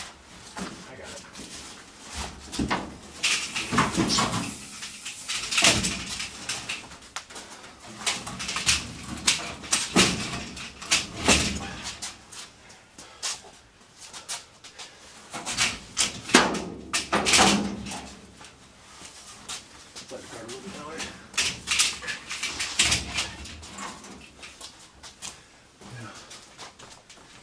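Irregular metal clunks and scrapes as a steel pickup bed is shifted by hand on the truck frame and a wire-mesh cart is moved into place beneath it, with voices between the knocks.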